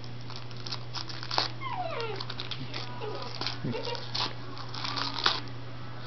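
Corgi tearing at crumpled gift-wrap tissue paper: irregular crinkling and rustling throughout, with a few short whines from the dog about two and three and a half seconds in.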